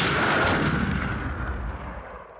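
Intro sound effect: a noisy, boom-like rumble that slowly dies away.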